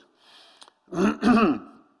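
A man clears his throat into a microphone: a faint breath, then a short, loud, rasping throat-clear with a voiced pitch about a second in.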